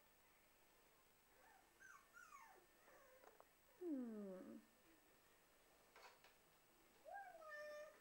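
Young black-and-tan puppy whimpering softly: a few short high whines that slide down in pitch, a longer falling whine about four seconds in, and another whine near the end.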